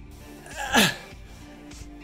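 A man's single loud, short vocal outburst about a second in, falling in pitch and ending in a sharp breathy burst: a strained groan or sneeze. A television plays music faintly underneath.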